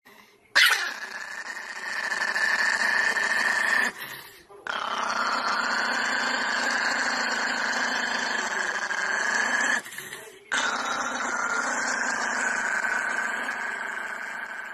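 Pomeranian puppy giving three long, drawn-out vocal calls in a row, separated by short breaks.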